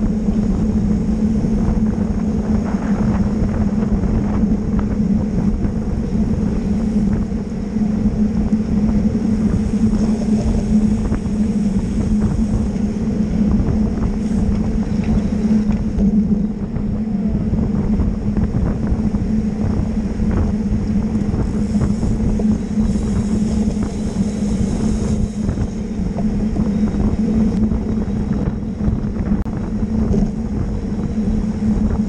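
Steady wind rushing over a bike-mounted camera's microphone, mixed with tyre and road noise from a road bicycle riding at racing speed in a pack, under a constant low hum.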